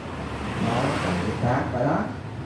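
A motor vehicle passing by, a noisy whoosh that swells and fades over a steady low hum, with indistinct voices over it.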